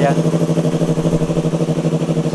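Yamaha R3's parallel-twin engine idling steadily through an SC Project aftermarket exhaust canister.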